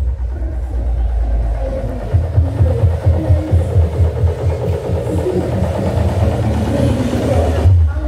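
Loud bass-heavy music with a thumping beat from a parade sound system, over crowd voices, with an old military jeep's engine running at low speed close by.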